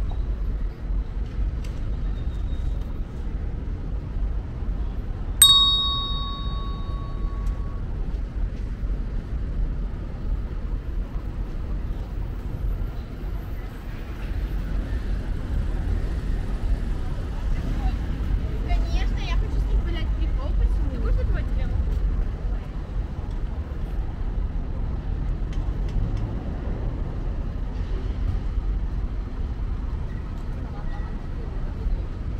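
Outdoor street ambience on a pedestrian promenade: a steady low rumble of distant traffic with passers-by talking faintly. About five seconds in, a single bright metallic ding rings out and fades over a couple of seconds.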